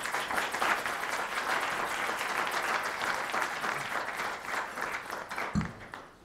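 Audience applauding steadily, then dying away near the end, with a short low thump just before it stops.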